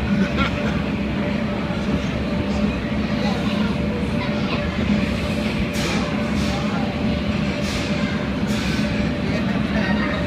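Blower fan of an enclosed wind booth running steadily: a constant rush of air with a low hum.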